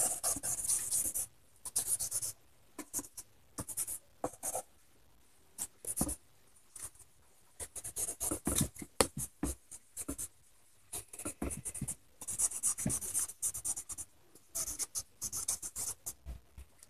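A marker pen scribbling on paper: quick, irregular back-and-forth scratchy strokes in clusters with brief pauses, with longer runs of colouring near the start, about halfway and after about 12 seconds.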